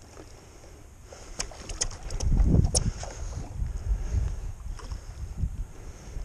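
Wind gusting on an action-camera microphone, an uneven low rumble that is loudest about two to three seconds in, with a few short, sharp high ticks scattered through it.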